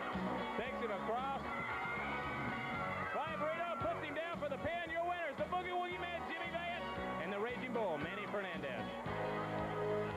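Rock music with a singing voice over a steady low bass line.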